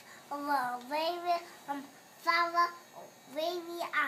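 A young girl's voice in a sing-song, half-sung babble: four short phrases with drawn-out, gliding notes and short pauses between.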